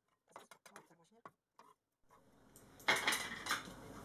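A kitchen knife scraping and tapping chopped onion off a wooden cutting board into a glass bowl, faint scattered clicks at first. About three seconds in come two louder kitchen clatters, half a second apart.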